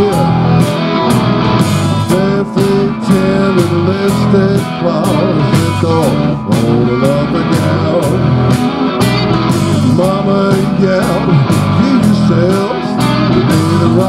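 Live rock band playing an instrumental passage: electric guitars, bass and drums keep a steady beat while a lead guitar line bends up and down in pitch over it.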